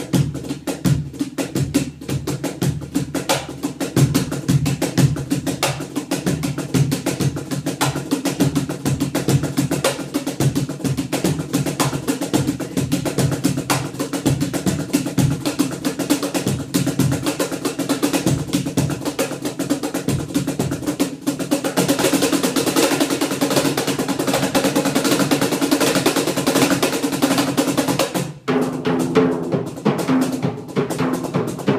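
Darbuka (goblet drum) played solo with the hands: fast, dense finger strokes and rolls, becoming an unbroken rapid roll from about two-thirds of the way in. Near the end the playing breaks off briefly, and a lower, more ringing pattern begins.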